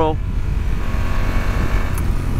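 2020 Honda Africa Twin's 1,084 cc parallel-twin engine running steadily at a road cruise of about 48 mph, under a heavy, steady low rumble of wind and road noise.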